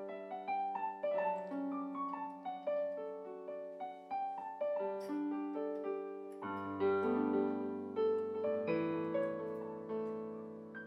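Piano instrumental played on a Casio CTK-691 keyboard's piano voice: a melody of single notes over held chords, with a low bass note joining about six and a half seconds in.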